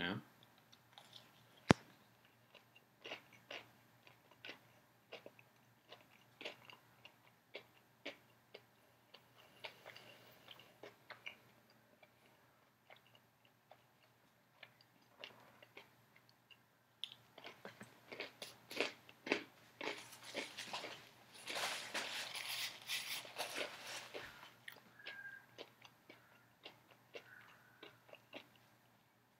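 Someone biting and chewing a crispy cornmeal-breaded chicken tender close to the microphone: scattered soft crunches, sparse at first and coming thicker and louder over the second half.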